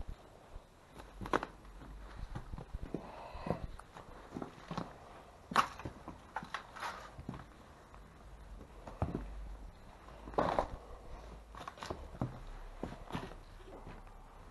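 Footsteps over loose boards and scattered debris on a littered floor: uneven knocks and scuffs, roughly one a second, with a few louder knocks.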